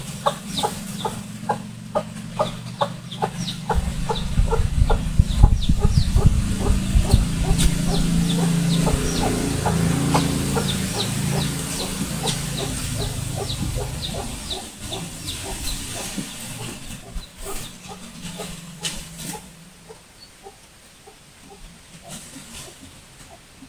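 Chickens clucking, a quick run of short repeated calls that thins out towards the end, over a low rumble that builds about four seconds in and fades away by about fifteen seconds.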